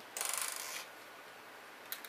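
Clear plastic packaging crinkling briefly as it is handled, then a single sharp click near the end.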